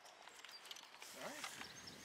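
Faint voice in the background over quiet outdoor ambience, with a few light clicks.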